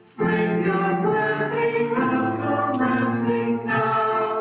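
A small choir of women's and men's voices singing a hymn in harmony, with a short breath pause right at the start.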